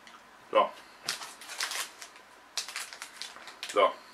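Crinkling and rustling of packaging in a few short, irregular bursts as a wrapped snack bar is picked up and handled.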